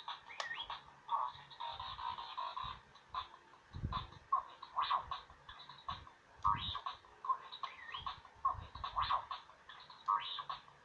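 R2-D2 Bop It toy playing R2-D2's electronic beeps, warbling whistles and chirps through its small speaker during its Pass It game. Two dull thumps are heard, about four seconds in and again two and a half seconds later.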